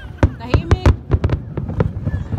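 Aerial display fireworks bursting: a rapid series of sharp bangs and crackles, the loudest in the first second and a few more after.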